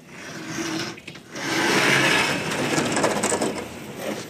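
Sliding whiteboard panel being pushed along its track: a rolling, rushing noise that eases briefly about a second in, is loudest around two seconds in, and fades toward the end.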